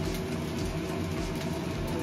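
Fried rice sizzling in a frying pan over a lit gas burner: a steady hiss with faint crackles over a low rumble.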